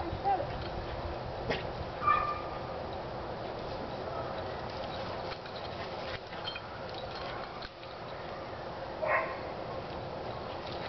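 Small dog giving a few short, high barks in excitement while playing with a frisbee: one just after the start, one about two seconds in, and one near the end.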